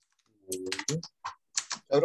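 Typing on a computer keyboard: a quick run of keystrokes starting about half a second in.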